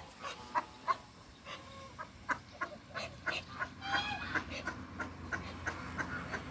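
Domestic ducks, Muscovy and mallard-type, giving a run of short calls, about three a second, with a longer call falling in pitch about four seconds in.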